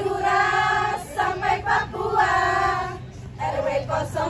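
A group of women singing a cheer song in unison, in short phrases with long held notes.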